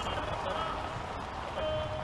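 Range Rovers of a motorcade passing slowly: a steady rush of tyre and engine noise, with faint voices mixed in.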